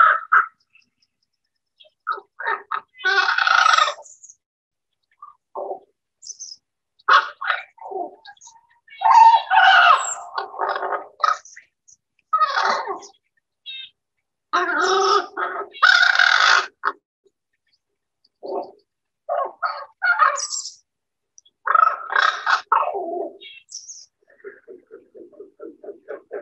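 Common raven calls from a field recording: a series of varied croaks and calls in separate bursts with pauses between, ending in a quick run of low, evenly repeated notes.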